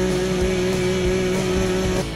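Electric blender motor running at a steady pitch while grinding onion, garlic and soju for the marinade; it stops near the end.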